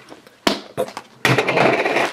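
A single plastic click as a Pikmi Pops plastic capsule is snapped open, then, from a little past a second, steady crinkling of the foil packs inside as they are handled and pulled out.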